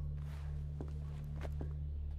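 A few faint, spaced footsteps on a wooden floor over a low steady hum.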